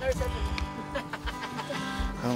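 Guitar being played, with sustained ringing notes, and a brief voice over it near the start.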